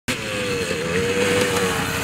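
KTM EXC 250 enduro motorcycle engine running at steady high revs as the bike approaches, its note holding level and growing a little louder.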